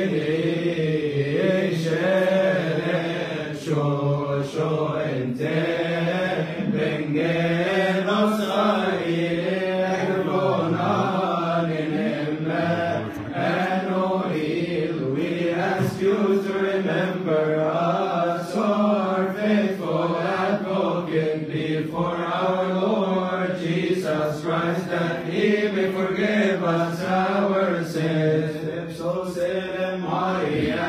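Men's voices chanting a Coptic Orthodox liturgical hymn, long drawn-out lines winding slowly up and down in pitch without a break.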